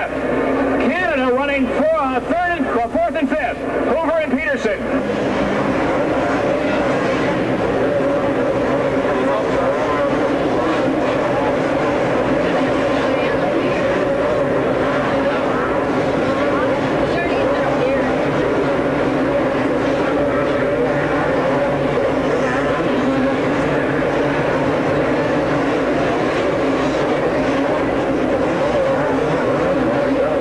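Several two-stroke motocross bikes racing on an indoor supercross dirt track, their engines overlapping into a dense drone. Pitch wavers as the bikes rev up and down over the first few seconds, then the sound settles into a steady drone.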